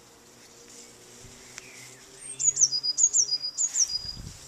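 A small songbird singing: after about two seconds, a quick run of about five high notes, each sliding down in pitch, over a faint steady low hum.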